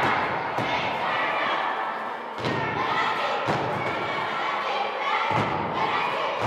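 Dull thumps at irregular intervals over the chatter of a group of children's voices, echoing in a school gymnasium.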